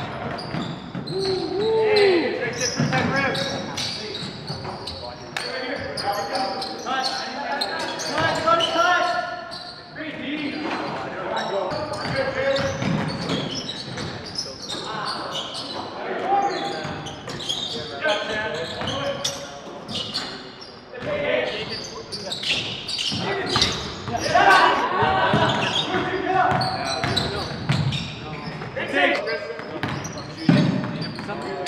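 Basketball game sound: a ball dribbling and bouncing on a hardwood court, with players' voices calling out indistinctly throughout.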